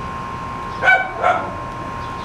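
Dog yapping twice in quick succession, two short high-pitched yips about half a second apart near the middle.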